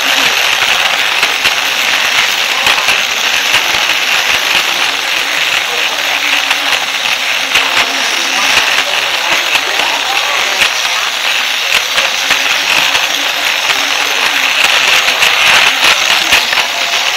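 Battery-powered toy train's small electric motor and gears whirring close up. Rapid irregular clicking comes from the wheels running over the joints of the plastic track.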